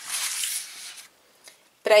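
A stiff sheet of paper rustling and sliding as it is pushed under a coloring-book page. The rustle lasts about a second, then stops.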